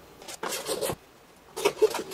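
Metal hand file rasping across the edge of a thin plastic soundboard on a tap-shoe heel to smooth it down: short strokes in two groups with a half-second pause between, the loudest near the end.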